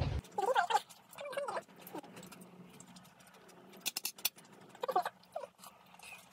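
A cat meowing softly several times in short calls, with a few sharp clinks of tableware about two-thirds of the way through.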